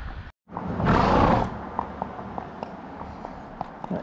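Horse's hooves clip-clopping at a walk on tarmac, faint and regular, after a loud rushing noise about a second in.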